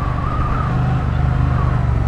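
Triumph T100 Bonneville's 900 cc parallel-twin engine running steadily at a constant pitch while cruising, heard from the rider's seat with road and wind noise.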